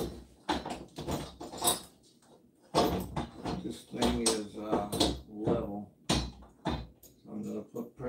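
A man speaking indistinctly, broken by a few sharp knocks.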